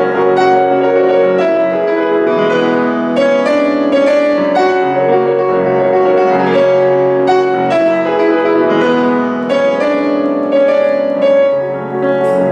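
Grand piano played solo: a continuous flow of chords and melody, in a piano solo arrangement of a song, with fresh notes struck every half second or so.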